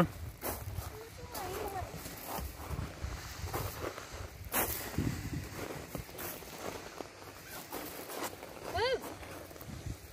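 Footsteps and shuffling on rubber playground tires and wood-chip mulch, with scattered soft knocks, one sharp knock about halfway through, and brief children's voice sounds near the end.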